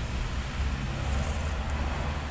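Steady low rumble of outdoor background noise, with no other clear event.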